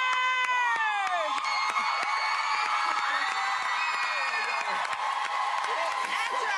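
A woman's long, high scream that bends down in pitch and trails off about a second in, over a studio audience cheering and clapping. Further whoops rise out of the crowd partway through.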